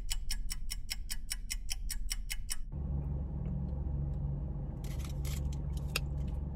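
A fast, even ticking, about six ticks a second, in the style of a clock-tick sound effect, lasting close to three seconds. It then stops, and the low hum of a car cabin comes back with a few light clicks.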